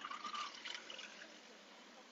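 Faint road noise from a car passing close by: a soft hiss that is strongest in the first second and then fades.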